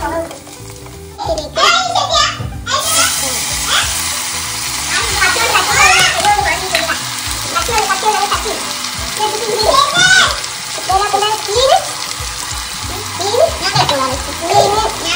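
Food frying and sizzling in a clay pot, stirred with a wooden spatula, growing louder about three seconds in as chopped tomatoes go in. Background music with a singing voice plays over it.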